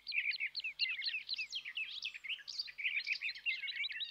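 Small birds chirping: a dense, continuous run of short, quick high notes from several birds at once.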